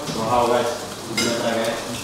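Indistinct voices of people talking around a meal table, with a brief clatter about a second in.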